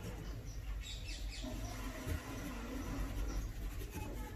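Pen writing on paper: faint, short scratching strokes over a steady low hum.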